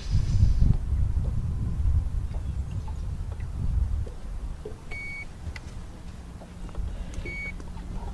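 Two short electronic beeps about two seconds apart, over a low rumble of wind on the microphone. A steady low hum starts between the two beeps.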